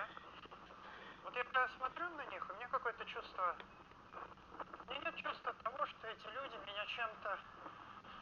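Faint, tinny speech played back through a loudspeaker: the soundtrack of a video on a screen, picked up by a camera filming that screen.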